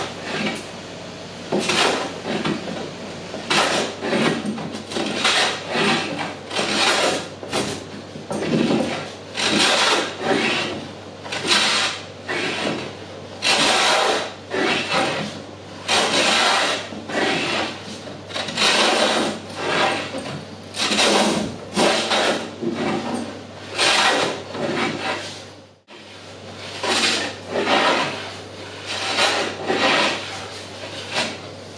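Long jointer hand plane (a No. 7) shaving the edge of a sapele board in repeated strokes, about one a second, with a brief pause a few seconds before the end. The edge is being trued because it is out of square, high on one side.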